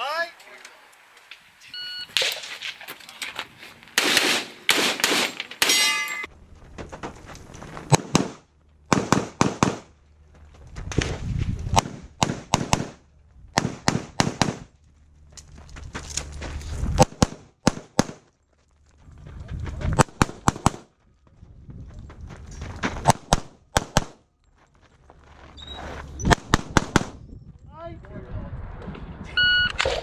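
Shot timer beep, then a pistol fired in rapid strings of sharp shots with pauses between as the shooter moves through a USPSA stage. Some shots are followed by the ring of steel targets being hit.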